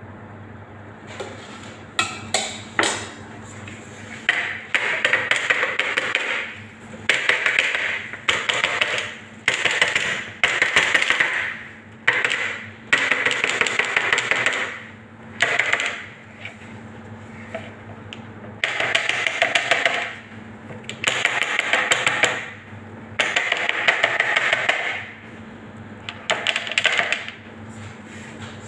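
A metal wire cake rack rattling against a metal tray in about a dozen bursts of a second or two each, as the ganache-covered cake is shaken to settle the coating and let the excess drip off. A steady low hum runs underneath.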